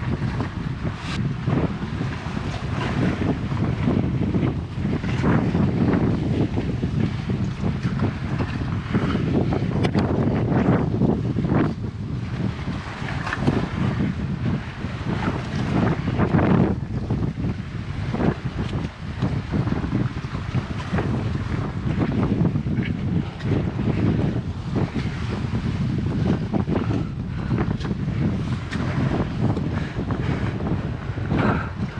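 Wind buffeting a body-worn action camera's microphone in an uneven, gusting rumble, with sea surf washing below.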